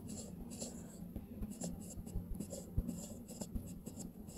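Stylus writing on a tablet touchscreen: a run of faint, irregular quick taps and short scratches as letters are drawn.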